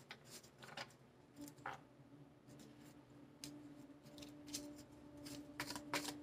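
Faint, scattered soft clicks of a tarot deck being shuffled by hand. A low steady hum joins in about a second and a half in.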